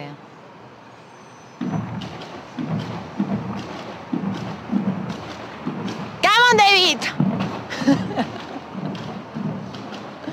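A man and a woman talking indistinctly over low street noise. About six seconds in comes the loudest moment, a high, rising exclamation from the woman.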